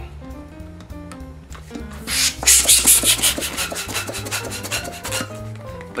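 Hand balloon pump inflating a 260 twisting balloon: a run of quick, noisy rasping strokes from about two seconds in to about five seconds, over soft background music.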